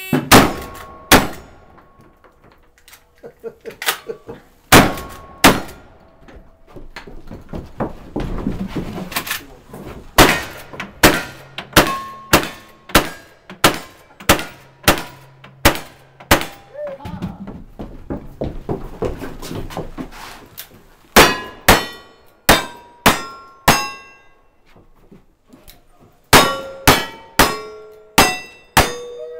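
A fast string of about two dozen black-powder gunshots, each hit on a steel target answered by a short metallic ring. The shots come in quick runs, with two pauses of a few seconds between them.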